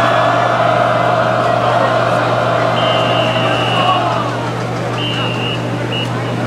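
Marching band holding a long chord that dies away about four seconds in, over a steady low hum and stadium crowd noise. Then come a few high, steady tones: one long and two short.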